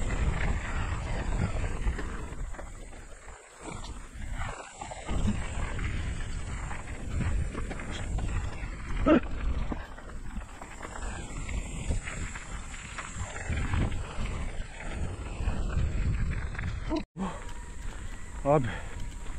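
Wind buffeting the microphone over the rumble and crunch of tyres rolling along a dirt and gravel track, surging and easing unevenly. The sound cuts out abruptly for a moment near the end.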